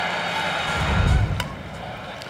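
Faint background music with a low rumble, then about one and a half seconds in a single sharp crack of a softball bat hitting the pitch, a hit that goes up as a pop-up.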